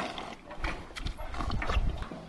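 Cows drinking water from a bathtub trough: a series of short sucking, splashing strokes, about two or three a second.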